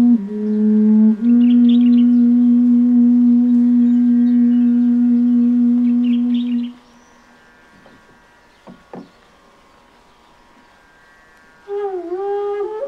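Long bass bansuri holding one low, steady note for about six and a half seconds, then breaking off. A new, higher note comes in just before the end.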